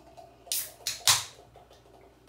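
Beer poured from aluminium cans into glasses: a few short bursts of splashing and fizzing, the loudest about a second in.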